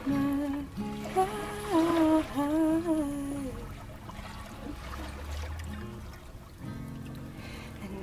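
Two acoustic guitars playing, with a voice singing long held notes that bend in pitch for the first three seconds or so. The voice then stops and the guitars carry on alone, more quietly.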